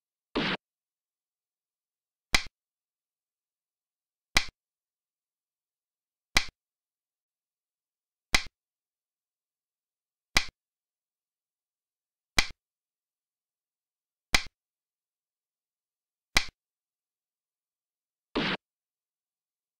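Xiangqi board-app move sound effects: a slightly longer clack about half a second in, then eight short, sharp piece-placing clicks, one every two seconds, as the pieces are moved.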